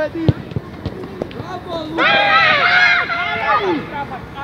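A football kicked with a sharp thud about a third of a second in, followed by a few lighter knocks. From about halfway, several high young voices shout at once for nearly two seconds.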